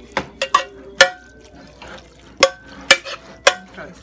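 A utensil stirring spaghetti in meat sauce in a pot, knocking against the pot about seven times in uneven strokes, each a sharp clink with a short ring, over a soft wet stirring of the noodles.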